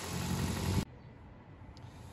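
A Mitsubishi Colt Ralliart's turbocharged four-cylinder engine running, started up to bleed air from the freshly refilled cooling system. The engine sound stops abruptly under a second in, leaving only a faint low hum.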